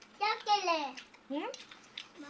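A young child speaking briefly in a high voice: one short phrase, then a shorter rising utterance.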